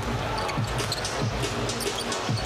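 A basketball dribbled on a hardwood court, a steady bounce about twice a second, each bounce a low thud, over constant arena background noise.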